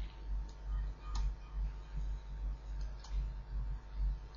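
Faint clicks and taps of a stylus on a pen tablet during handwriting, a few light clicks over a low steady hum.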